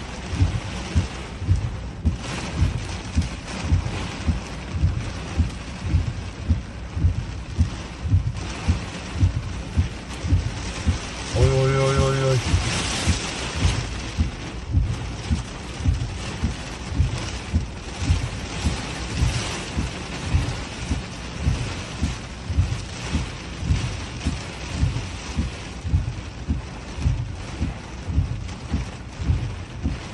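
Heavy rain drumming on a car's roof and windshield, heard from inside the car, with a regular low thumping of about three beats every two seconds. Near the middle a single held tone sounds for about a second.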